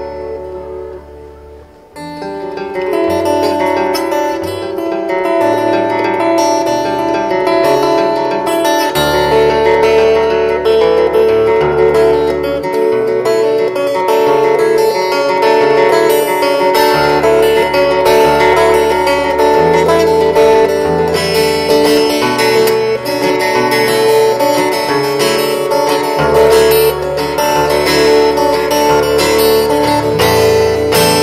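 Solo steel-string acoustic guitar played fingerstyle, with picked melody notes over changing bass notes. The playing fades and almost stops about two seconds in, then picks up again and carries on steadily.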